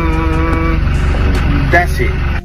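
A man's long hummed "mmm" that stops a little under a second in, over the steady low rumble of a car's interior, then a brief spoken word near the end.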